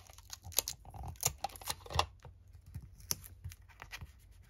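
Light handling sounds of paper and tape being worked by hand: scattered small clicks, taps and brief rustles.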